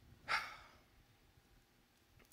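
A woman's single short sighing breath, about a third of a second in.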